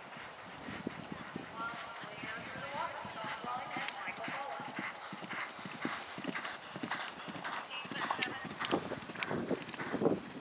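Hoofbeats of a horse galloping on grass turf in a running rhythm, growing louder toward the end as the horse comes close, with people talking in the background.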